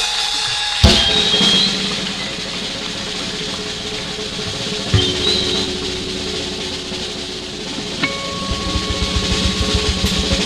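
Acoustic drum kit played live in a solo exchange. Two hard accented hits leave cymbals ringing, one about a second in and one about halfway through. Near the end a fast run of bass-drum strokes begins.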